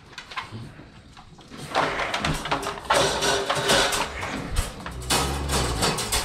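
Irregular clattering and rustling from handling wire dog crates and steel dog bowls. It starts about two seconds in and is dense with sharp clicks, with a low rumble near the end.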